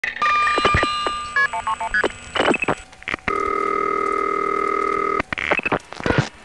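Vintage telephone exchange sounds from old Panel, Step and Crossbar central offices. A held tone comes first, then a quick run of short signalling beeps, clicks and switching rasps, and then a steady, slightly pulsing tone about two seconds long.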